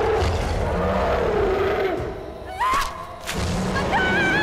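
Sound-effect growl of a giant monster: a deep, wavering rumble over heavy low thuds. About two and a half seconds in, a short rising scream cuts in.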